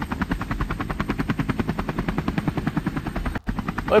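A rapid, even chopping pulse, about a dozen beats a second, runs steadily under the scene, with a brief break about three and a half seconds in.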